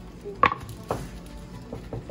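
Sharp knocks and taps on a plastic cutting board as a cook handles sliced grilled pork with a knife and a wooden serving tray: a loud knock about half a second in, a second one just under a second in, then a few lighter taps near the end.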